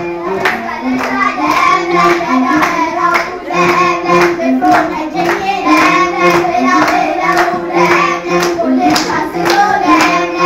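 A group of children singing an Ethiopian New Year song together, with hand clapping and a drum beating about two times a second.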